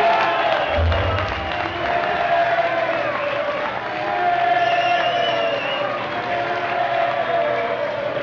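Live rock band playing in a hall, with the crowd cheering over it, and a deep thump about a second in.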